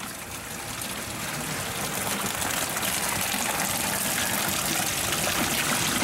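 Watery sewage sludge pouring and splashing as a five-gallon pail is emptied into a screw press hopper, with liquid running out through the press's perforated screen. The rushing grows louder over the first couple of seconds, then holds steady.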